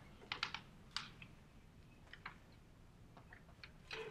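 Chalk writing on a blackboard: irregular sharp taps and clicks of the chalk against the board, bunched in the first second and again near the end.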